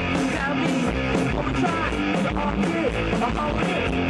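Live rock band playing through a stage PA: distorted electric guitars over a drum kit, a steady, dense wall of sound.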